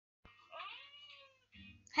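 A faint, short meow-like call that rises and then falls in pitch, after a click near the start.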